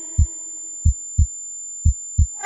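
Heartbeat sound effect in a song's mix: pairs of low thumps, lub-dub, about once a second, under a faint held note that fades away.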